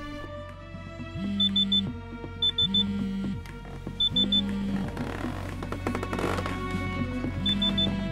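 Bedside alarm clock going off in groups of three quick high beeps, four groups in all, each with a low hum under it, over soft sustained film-score music.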